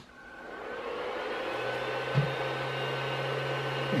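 Creality CR-10 Mini 3D printer powering up after its mains power is switched back on: its fans spin up into a steady whir that grows over the first second, with a thin steady whine, and a low hum joins about a second and a half in.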